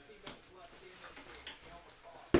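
Quiet room tone with a few faint clicks from light handling at a table.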